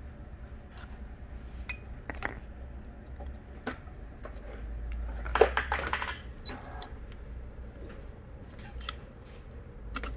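Small metallic clicks and clinks of hands handling the oil pump on a Juki DU-1181N industrial sewing machine, with a brief cluster of louder rattling about five and a half seconds in.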